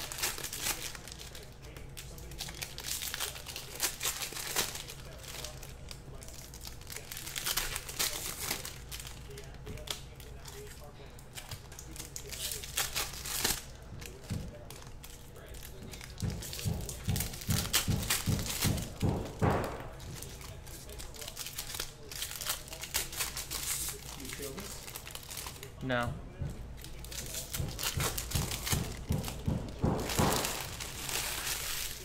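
Foil trading-card pack wrappers crinkling and tearing as packs are ripped open by hand, in irregular rustling bursts.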